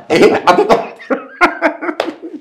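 A man laughing hard in a run of short, sharp bursts, with cough-like catches of breath.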